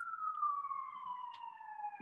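An emergency vehicle's wailing siren, one long tone sliding slowly down in pitch, faint behind the talk.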